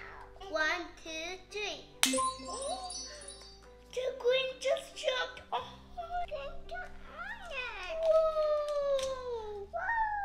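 Background music under young children's voices. About two seconds in comes a single sharp hand clap, followed at once by a brief high twinkling chime, and near the end a child's voice makes long falling exclamations.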